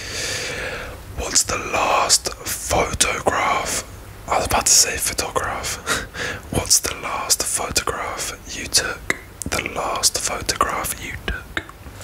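A man whispering close to the microphone, with many short clicks between the words.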